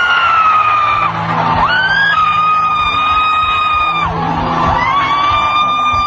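Music: a very high voice-like tone holds three long notes, each sliding up into pitch, over steady low held tones.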